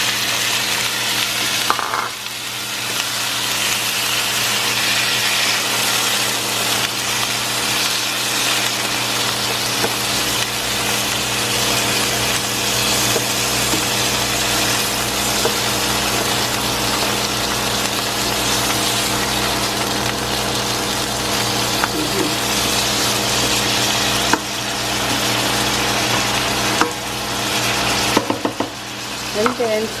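Marinated pork pieces sizzling steadily in hot oil in a nonstick pan with garlic and onion, stirred now and then with a spatula. A faint steady hum sits under the sizzle.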